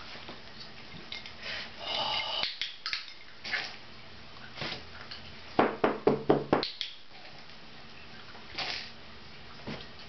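Handling noises: scattered soft rustles and light clinks, then a quick run of about seven sharp taps or clicks a little past halfway, the loudest part, with a couple of faint knocks near the end.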